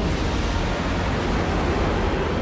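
Sci-fi spaceship sound effect: a steady rushing, rumbling noise, heavy in the low end, as the ship flies off into the distance.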